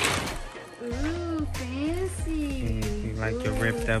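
Background music. A gliding, wavering melody comes in about a second in over held low bass notes.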